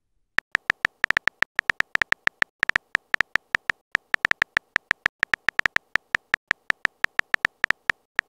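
Phone on-screen keyboard tap sounds: short, identical clicks in a quick, uneven run, about eight a second, as a text message is typed out letter by letter. They start about half a second in.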